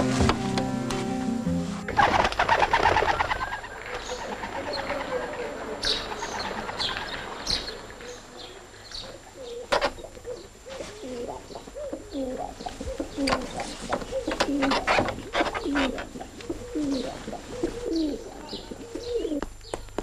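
Doves cooing over and over in short low phrases, with higher bird chirps scattered among them. Background music ends about two seconds in.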